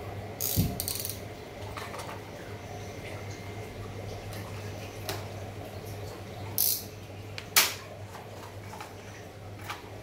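Small packaging being handled and a small white box being opened: scattered clicks and scrapes, with two sharper rustling bursts about two-thirds of the way through, over a steady low hum.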